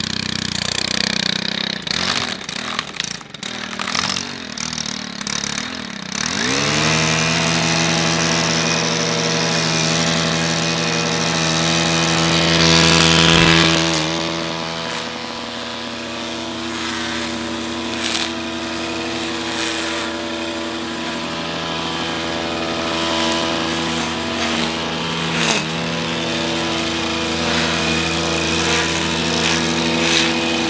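Stihl KM 130 combi-engine brushcutter (4-MIX engine) running unevenly at low speed, then opened up about six seconds in to a steady high-speed run. Its twisted Tornado alucut nylon line cuts grass close to a wooden post, with a couple of sharp ticks where the line strikes the post.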